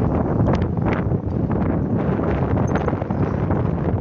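Wind buffeting a phone microphone in a moving open vehicle, a loud, rough, steady rumble with scattered crackles, with the vehicle running underneath.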